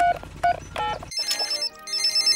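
Cartoon mobile phone: a few short keypad beeps over a low steady hum as a number is dialled, then, about a second in, the called phone ringing in two short bursts of high trilling tones.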